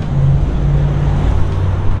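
A car engine running steadily, a low, even rumble.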